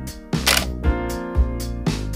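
Background music with a steady beat, about two strong hits a second over sustained pitched notes.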